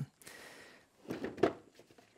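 Faint handling of plastic: a double battery charger being lowered into the moulded insert of a plastic Systainer case, with a short rustle and soft knocks about a second in.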